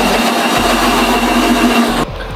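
Electric mixer grinder with a stainless steel jar running at full speed, blending a banana milkshake: a loud, steady motor whine over a dense whir. It stops abruptly at the end.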